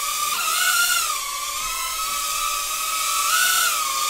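Hand-controlled mini UFO drone in flight, its small propellers giving a steady high whine. The pitch wavers up and down as the motors adjust to hold it in the air.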